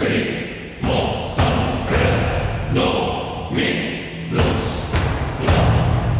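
Deep, heavy thuds repeating about once every second, each dying away before the next, with a faint voice-like sound between them.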